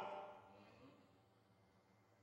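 Near silence: room tone, with the last of a man's voice dying away in the room's echo at the start.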